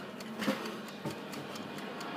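Faint, quick, even ticking, with a soft knock about half a second in and a small click about a second in.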